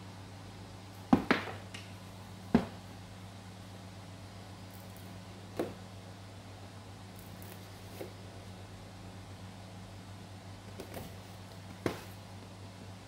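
A handful of short, sharp knocks and taps, the two loudest in the first three seconds, as a cardboard box and a knife are set down and handled on a glass-topped table, over a steady low hum.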